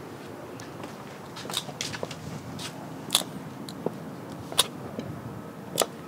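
6-inch stiletto heels of white Pleaser Aspire-609 platform sandals clicking on a concrete walkway as she walks: about eight sharp heel strikes, starting about a second and a half in, roughly one every half to three-quarters of a second.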